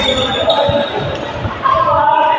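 Badminton doubles play echoing in a large indoor hall: sharp racket hits on the shuttlecock and footsteps on the court floor, with voices in the background.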